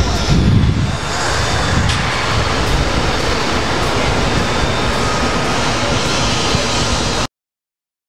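A steady, loud rushing rumble of outdoor noise, which cuts off abruptly a little over seven seconds in.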